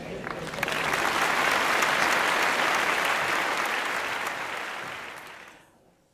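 Audience applauding: dense clapping that swells about a second in, holds steady, and fades out near the end.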